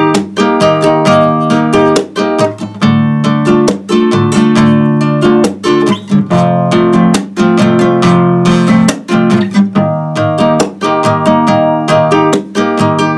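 Nylon-string classical guitar strumming chords in a steady, quick rhythm of strokes, changing chord every few seconds: the chord progression for a song's chorus.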